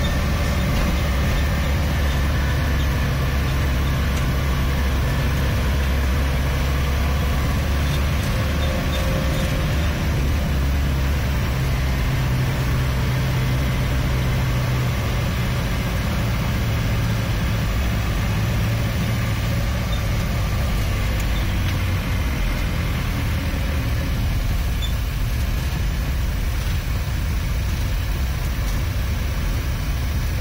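Inside a car's cabin while it drives slowly in pouring rain: a steady low engine and road rumble, with an even hiss of rain on the car.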